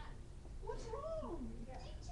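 A single drawn-out vocal call that starts about half a second in, slides up in pitch and then back down over about a second.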